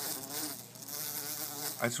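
Large bee buzzing at a window, trapped and unable to get out; the buzz wavers in pitch.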